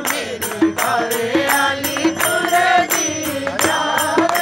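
A group of people singing a devotional chant together, clapping their hands in a steady beat, about two or three claps a second.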